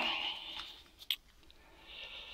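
Clear plastic battery case being handled: a soft rustle that fades, a single sharp click about a second in, then another soft rustle near the end.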